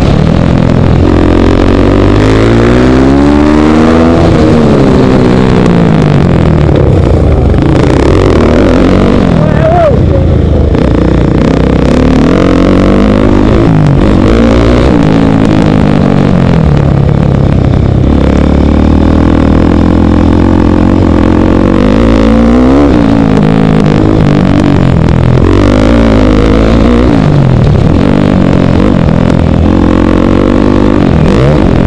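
KTM 450 SMR supermoto's single-cylinder four-stroke engine, heard loud from the rider's helmet. It is revving hard and rising and falling in pitch again and again as the rider accelerates, shifts and shuts off for corners.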